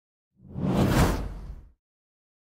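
A whoosh transition sound effect with a deep bass, swelling in about half a second in, peaking near the middle and fading out shortly before the end.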